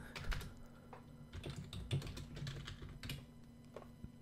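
Faint typing on a computer keyboard: an irregular run of soft keystrokes that thins out near the end.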